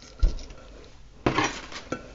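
Hands handling things at a glass vase and on a tabletop: a low knock about a quarter second in, then a short scraping clatter past the middle.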